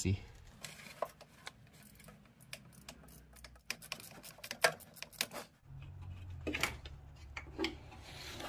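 Irregular metallic clicks and knocks of hand tools and parts being worked on a car engine as an AC compressor is loosened, over a low steady hum.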